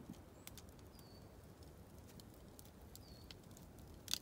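Small wood campfire crackling faintly with scattered sharp pops, and a bird giving two short falling chirps, about one second in and again near three seconds.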